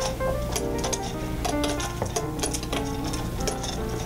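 Quick clinks and rattles, several a second, as a miniature donkey feeds from a stainless metal bowl held to her muzzle, her muzzle and the feed knocking against the metal. Background music plays throughout.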